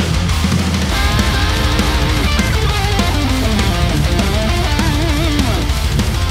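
Heavy metal track playing back: a lead electric guitar solo with bent, wavering notes over distorted rhythm guitars from a Mesa Boogie Mark V, with fast, dense drums underneath. The rhythm guitars are dipped slightly in level by volume automation so the solo sits on top of the mix.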